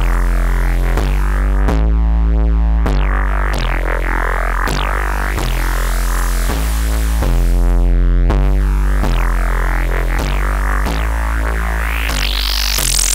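Electronic music with a low, heavily distorted synth bass playing a repeating riff, a new note about every second or less, run through Neutron 4's Trash distortion.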